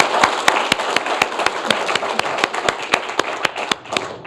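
Audience applause, many hands clapping, gradually dying down.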